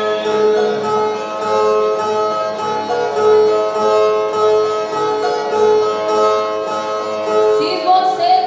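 Two violas played together in a repeating instrumental passage of a Northeastern Brazilian cantoria, with plucked steel-string notes ringing. A singing voice comes in near the end.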